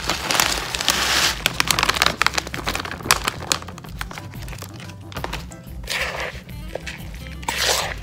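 A plastic bag of shredded Parmesan cheese crinkling and rustling as it is shaken out into a bowl, in bursts, loudest at the start and again near the end, over background music.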